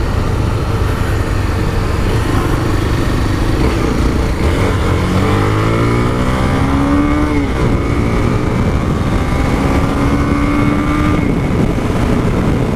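Honda CB300's single-cylinder engine pulling the motorcycle along, its pitch climbing from about a third of the way in, dropping sharply past the middle, then climbing again. Heavy wind noise rushes over the microphone throughout.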